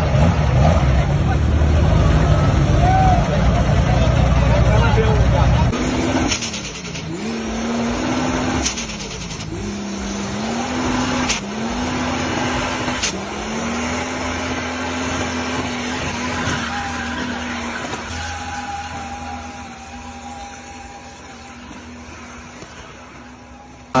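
Chevrolet Omega 4.1-litre straight-six with compound turbochargers, running loud and deep at first. About six seconds in the sound changes: the engine revs up and down over and over through a burnout, with a high whistle above it and tyres squealing. It grows fainter toward the end.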